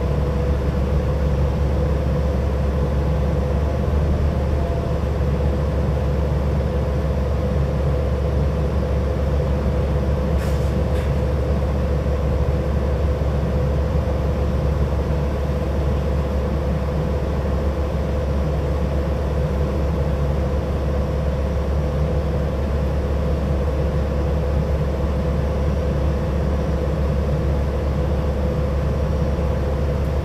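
New Flyer XD60 articulated diesel bus running, heard from inside the passenger cabin: a steady low drone with a constant mid-pitched hum. A brief sharp click about ten seconds in.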